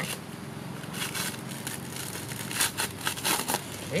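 Coconut husk being torn apart by hand, its fibres ripped out in a series of short, irregular rips, clustered about a second in and again near the end.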